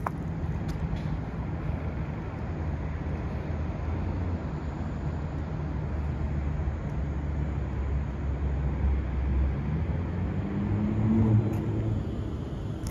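Steady low rumble of city background noise heard from high up, with a constant low hum running through it. Near the end a deeper tone swells and glides, like a vehicle passing below.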